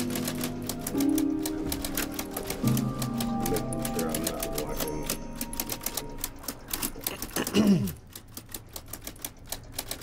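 Rapid clatter of typewriter keys, struck in quick irregular runs, over background film music of sustained tones. About seven and a half seconds in there is a brief loud falling sweep, and after it the typing goes on more sparsely.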